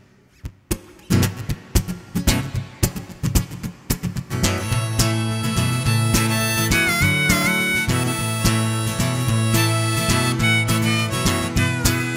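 Acoustic guitar strummed alone in the song's opening bars, joined about four seconds in by a harmonica playing sustained notes over the strumming, with a brief bend in pitch partway through.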